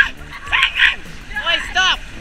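Short high-pitched yelps in two quick pairs, each call rising and then falling in pitch.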